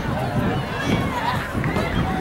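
Background chatter of several people's voices talking, at a moderate level.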